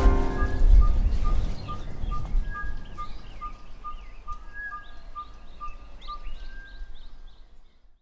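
Birds calling outdoors: one repeats a short single note about twice a second while others add quick higher chirps, the whole fading out near the end.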